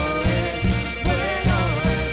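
A live band playing with a steady beat: drum kit and electric bass under a bowed violin melody with vibrato.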